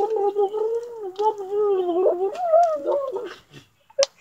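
A long, wavering voice-like call, its pitch bending up and down, held for about three seconds before stopping shortly before the end.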